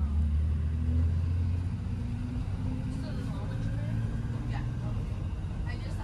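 Steady low engine drone and road rumble heard from inside a moving school bus.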